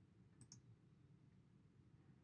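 Near silence, with a faint double click of a computer mouse button about half a second in.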